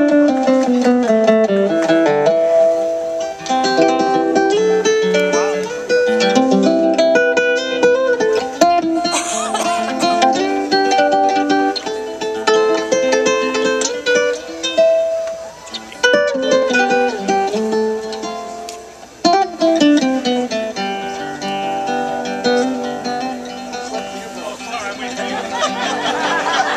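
Solo nylon-string acoustic guitar played unaccompanied as a free-time intro: picked melodic phrases and chords, many of them running downward, with short pauses about 16 and 19 seconds in.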